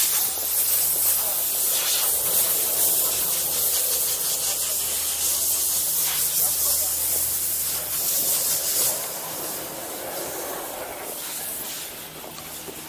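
Snowboard sliding over snow: a steady scraping hiss that eases off about nine seconds in as the board slows.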